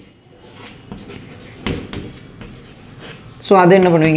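Chalk writing on a blackboard: faint, short scratches and taps of the chalk as letters and an arrow are written, with one sharper stroke a little before the middle. A man's voice starts speaking near the end.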